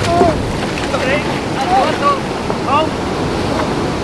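Surf washing and breaking around the wading men, with wind buffeting the microphone and a few short calls over it.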